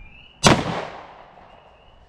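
A single 9mm pistol shot from a PSA Dagger, fired about half a second in, with a sharp report that echoes away over about a second.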